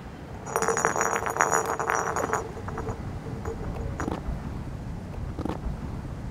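A rapid clattering rattle with a high ring for about two seconds, then a few single, spaced footsteps of hard-soled loafers on asphalt.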